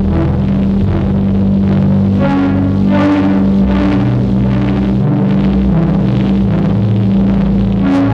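Korg volca FM synthesizer played through a Korg Monotron Delay: a held low tone with shifting bass notes beneath it and brighter note attacks about every second.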